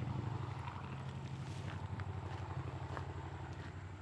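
Subaru Sambar's small carbureted 660 cc four-cylinder engine idling steadily, with a low, even pulse.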